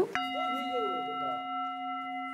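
A bell-like sound effect, like a struck singing bowl, comes in suddenly just after the start and rings as one steady tone with several overtones, added in editing over a quiet stretch.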